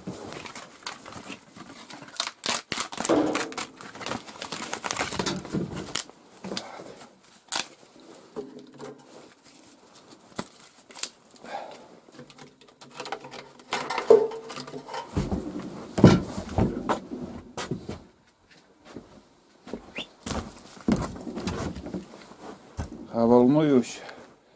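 Split firewood being laid by hand in the firebox of a homemade sheet-steel burzhuika stove: scattered knocks and clatters of wood against wood and steel, with rustling between them. A man's voice is heard near the end.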